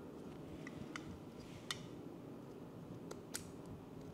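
Utility knife blade cutting and scraping at the rim of a clear plastic coffee dripper, trimming its bottom open: a few faint, sharp clicks and scrapes a second or so apart.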